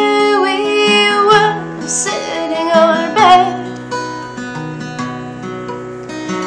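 Acoustic guitar strummed steadily while a woman sings over it. The singing stops a little past the halfway point, leaving the guitar alone.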